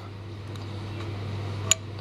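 Low steady hum, with a single light metallic click near the end as a finger touches and moves the torque-control lever inside an opened Delphi DP200 diesel injection pump.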